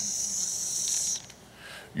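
A felt-tip marker drawn in one quick stroke up a sheet of flip-chart paper, a high hiss lasting about a second.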